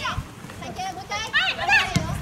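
Women's voices shouting and calling out across a soccer pitch during play, high-pitched and loudest about a second and a half in.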